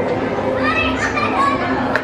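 Children's voices in a busy restaurant dining room, a child's high voice carrying through the middle, over a steady low hum and background chatter.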